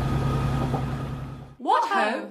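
Steady running noise inside a moving train carriage: a low hum with a few faint steady tones. It cuts off sharply about one and a half seconds in, and a short voice-like sound that slides up and down in pitch follows.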